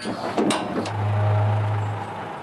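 A few sharp knocks in the first second as steel locking bolts are struck into the frame of a lowbed trailer that has just been shortened. They are followed by a steady low drone.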